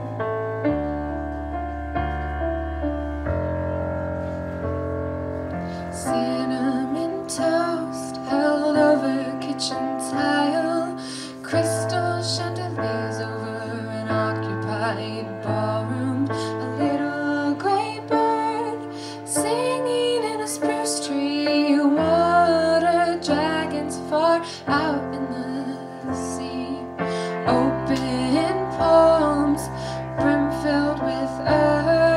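Solo performance on a Yamaha digital piano: sustained chords alone at first, joined about six seconds in by a young woman's singing voice, which carries on over the piano accompaniment.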